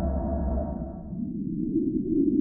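Trailer soundtrack: a sustained, low, ominous drone chord that fades out about a second in, giving way to a low, rushing swell that grows louder toward the end.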